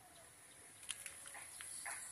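Two short, faint animal calls in the second half, over a steady high hiss.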